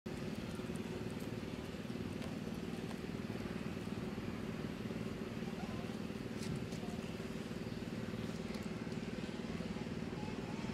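A steady low mechanical drone that holds the same pitch throughout, with a few faint clicks.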